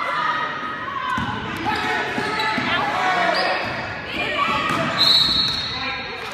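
A basketball bouncing on a hardwood gym floor in a large echoing hall, under voices calling out during play. A short high steady tone sounds about five seconds in.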